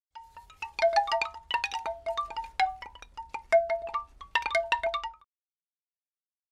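Intro logo jingle of quick chime notes, many struck in rapid, irregular succession and each ringing briefly, stopping abruptly about five seconds in.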